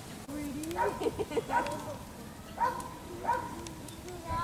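A person says a short "no" and laughs, a rapid run of laughter about a second in, then two short laughs near the end.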